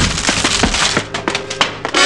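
Radio-drama sound effect of a door being forced in: a crash, then a quick irregular run of sharp cracks and clatters of splintering wood and breaking glass.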